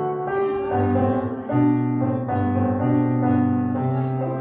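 Slow keyboard music: held chords that change about once a second.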